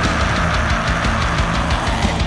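Loud, heavy distorted metal music: a band's guitars and bass holding a thick, droning chord with drums underneath, without vocals.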